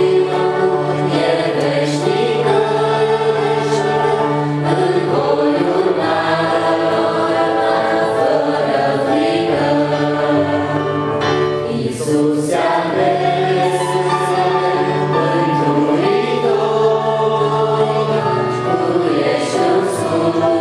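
Several voices singing a Christian song with Roland EP-880 digital piano accompaniment, the piano holding sustained low notes under the melody.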